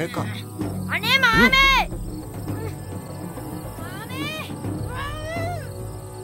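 High-pitched, wavering cries from a boy held in a headlock: a loud burst about a second in, then two fainter ones around four and five seconds in, over quiet background music.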